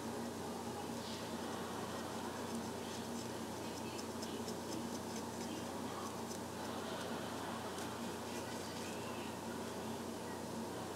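Faint, irregular scratchy strokes of a comb backcombing synthetic wig hair to tease it into volume, over a steady background hiss.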